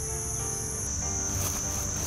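Steady high-pitched drone of insects such as crickets or cicadas, with a higher layer that stops about a second in.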